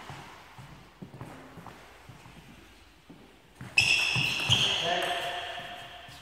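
A few faint bounces of a table tennis ball, then, a little past halfway, a sudden loud sound with several steady high tones that fade over about two seconds.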